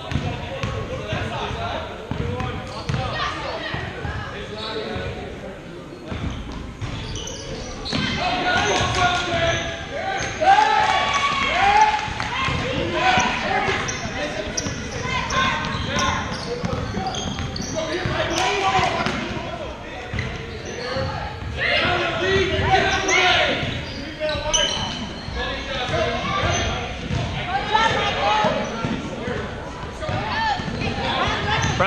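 A basketball bouncing on a hardwood gym floor during a youth game, with spectators' and players' voices calling out, all echoing in a large gym. The voices grow busier and louder from about eight seconds in as play runs up the court.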